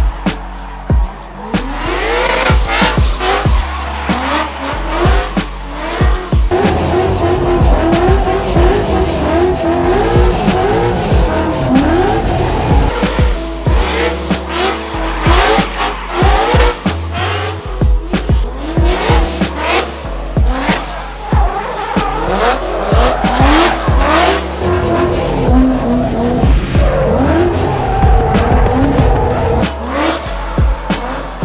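Ford Mustang RTR Spec 5-D V8 drift car drifting hard: the engine revs up and down over and over and the rear tyres squeal as they spin. Music with a steady beat and bass plays underneath.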